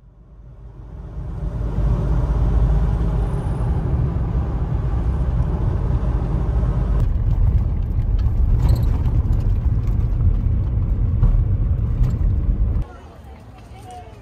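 Car driving on a country road, heard from inside the cabin: a steady low rumble of engine and tyres that fades in over the first two seconds. It cuts off suddenly about 13 seconds in, giving way to a much quieter outdoor background.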